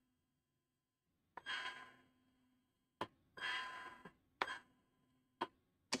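Small DC gear motors of a Waveshare JetBot whirring in two short bursts, each under a second long, as the wheels turn on gamepad commands. A few light clicks fall between and after the bursts.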